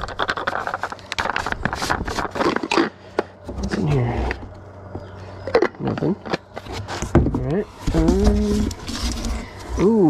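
Plastic clicking and scraping as a red-and-white plastic thermos jug is handled and its screw lid turned, dense in the first three seconds. A man's wordless voice sounds a few times, the longest near the end.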